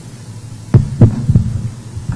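Two loud, dull thumps about a quarter second apart, then a few softer knocks over a low steady hum: a podium microphone being bumped or handled.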